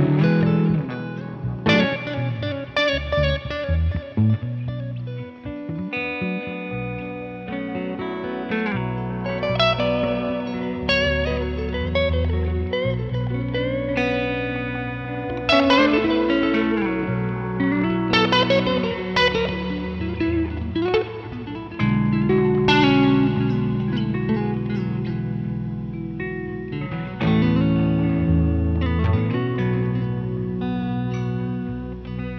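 Three electric guitars, among them a Stratocaster-style and an offset Jazzmaster-style, jamming together through effects pedals. They play picked single-note lines and chords over sustained low notes, without a break.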